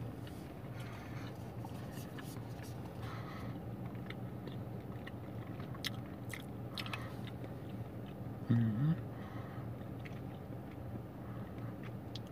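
A person chewing a soft, chewy gummy with the mouth closed: scattered small wet mouth clicks, with one short hummed "mm-hmm" about eight and a half seconds in.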